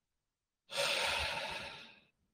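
A man's sigh, a breathy exhale into the microphone, beginning about two-thirds of a second in and fading away over roughly a second.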